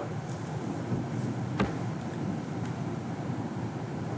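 Steady background hiss of room and microphone noise, with one sharp click about a second and a half in.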